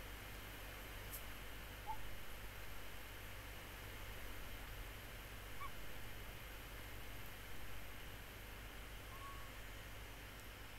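Quiet outdoor background with a steady low hiss, broken about three times by a faint, short whistled bird call.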